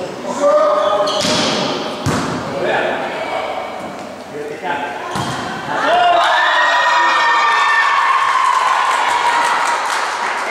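A volleyball rally in a gym hall: a few sharp hits on the ball ring out in the hall, mixed with players' shouts. From about six seconds in, a long, held shout of young female voices follows.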